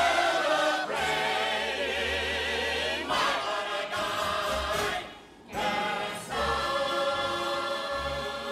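A chorus of voices holding the final sung note with vibrato over an orchestra, ending a musical number. After a brief drop about five seconds in, the orchestra and voices hold steady closing chords.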